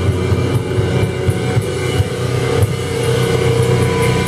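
Sludge metal band playing live: a loud, sustained drone of heavily distorted guitar and bass, with a few scattered drum and cymbal hits.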